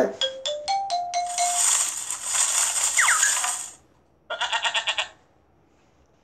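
Cartoon sound effects from a children's Bible story app: a quick rising run of short chiming notes, a loud sparkling hiss, then a short fluttering bleat from the cartoon ram.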